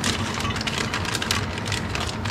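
Wrapping paper and a plastic bag rustling and crinkling as they are pulled about inside a plastic storage tote, an irregular run of small crackles over a steady low hum.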